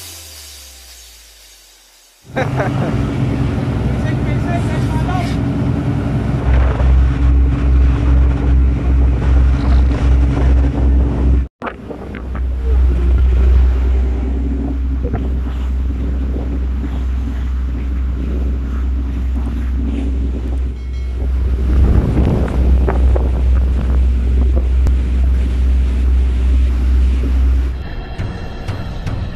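Deep, steady engine drone of an offshore vessel, with wind buffeting the microphone. It drops out for an instant near the middle and carries on.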